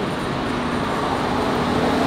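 Steady motor-vehicle noise, a low rumble with hiss, growing slightly louder over the two seconds.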